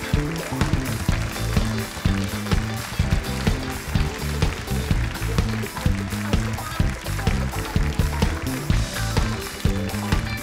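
Live house band of drums, bass, electric guitar and keyboards playing an upbeat walk-on tune with a steady, driving beat.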